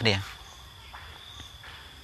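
A man's voice ends a word at the start, then a pause filled by a faint, steady high-pitched tone in the background, with a few faint soft ticks.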